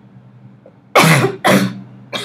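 A person coughing twice in quick succession, about a second in, two short loud coughs half a second apart.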